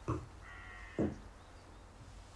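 A woman's voice catching on a single hesitant 'Je' about a second in. Just before it comes a faint, drawn-out, high-pitched call.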